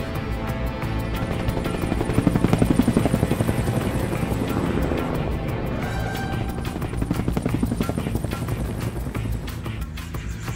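Helicopter rotor beating over background music. The rotor's rapid pulsing swells louder about two seconds in and again about seven seconds in.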